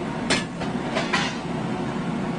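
Steel food plates clinking: three sharp clinks, one about a third of a second in and two close together about a second in, over a steady room hum.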